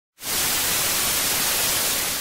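Television static: a steady, even hiss of white noise that starts abruptly just after the start.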